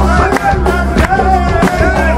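Live band playing instrumental music: a plucked lute line over a deep bass and a steady drum beat of about one and a half strokes a second.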